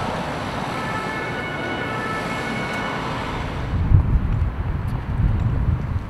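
City street traffic noise, with a heavy truck passing close by and a few steady high tones over it. About three and a half seconds in, the sound changes to uneven low rumbling.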